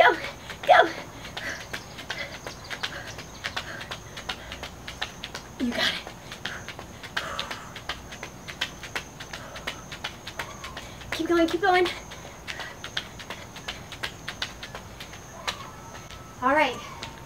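Quick, even footfalls of sneakers landing on an exercise mat over concrete during fast jogging in place with heels kicked up to the butt, broken by a few short voiced sounds.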